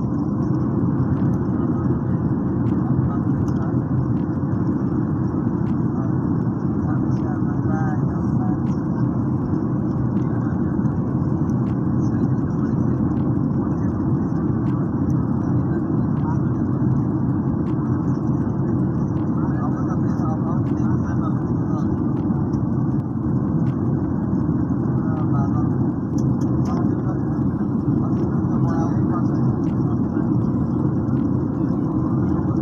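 Steady cabin noise of a Boeing 737 airliner climbing out, heard from a window seat by the wing. The engines and rushing air make a deep, even rumble, with a faint steady hum above it.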